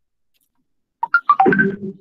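Silence for about a second, then a man coughs and clears his throat.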